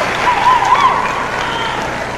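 Audience applauding, with a voice faintly over it.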